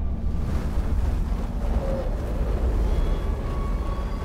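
Steady deep rumble from an animated film's sound design, with faint thin tones drifting in over it in the second half.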